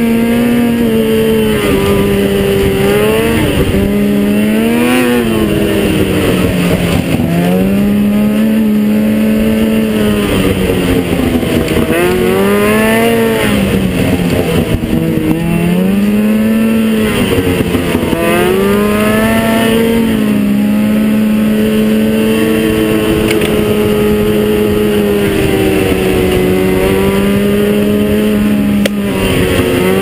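Ski-Doo XP 600 SDI two-stroke snowmobile engine, fitted with an aftermarket Dynoport pipe and Big Core Barker exhaust, running down a trail. Its pitch drops and climbs back several times as the throttle is eased and reopened, then holds steady for the last several seconds.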